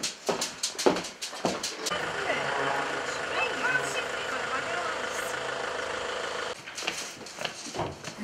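A run of sharp clicks and knocks, then a steady engine hum, like a vehicle idling, that cuts off suddenly about six and a half seconds in.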